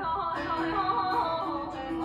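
Live Persian classical music in the Abu Ata mode: a woman's voice singing with quick wavering ornaments over plucked tar and setar, with a held low note about half a second in.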